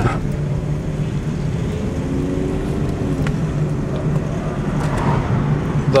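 Car engine and tyre noise heard from inside the cabin while driving: a steady low drone under a constant rush of road noise.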